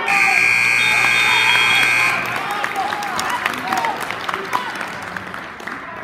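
Gym scoreboard buzzer sounding one steady, loud tone for about two seconds, signalling that time is up on the wrestling period. Crowd clapping and chatter follow.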